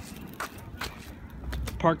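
Small plastic wheels of a lightweight umbrella stroller rolling over a concrete path, a low rumble with a few light clicks and taps along the way, along with footsteps.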